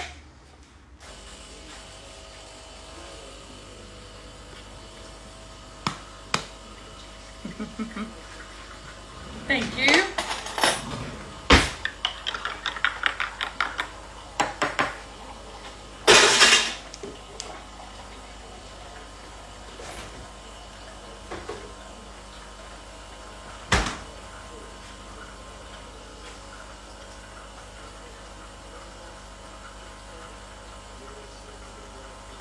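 Kitchen clatter of dishes and utensils: a run of clinks and knocks, busiest in the middle, with one more knock near the end. Under it is a steady machine hum from a Thermomix TM6 running its sugar-stages cooking program.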